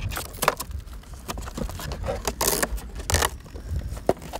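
Close-up handling noise from an RC boat's battery bay: a run of sharp clicks and plastic rattles with a few short rasping bursts, as the battery is strapped down inside the AquaCraft Revolt 30's hull and the hatch is fitted.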